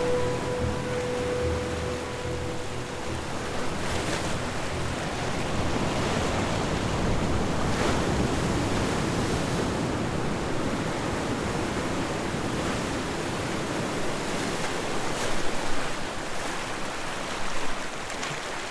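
Ocean surf: a steady wash of waves that swells and eases, with a louder surge near the end. A held musical tone fades out in the first few seconds.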